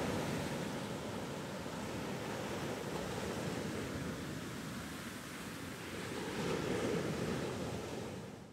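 Ocean surf washing over a kelp-covered shore: a steady rush of water that swells once near the end.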